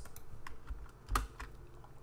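Computer keyboard keystrokes: a few scattered key presses, the loudest a little over a second in.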